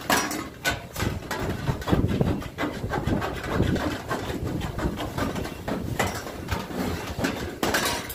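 Hand snips cutting a thin metal flashing strip, with the sheet crinkling as it is handled: an irregular run of sharp snips and crackles.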